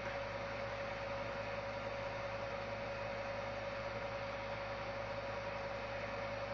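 Steady background hum and hiss of room tone, with one constant mid-pitched tone and nothing else happening.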